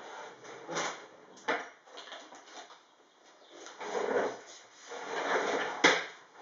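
Craft supplies being rummaged through and handled: a few light knocks and clicks with two stretches of rustling, and a sharp click just before the end.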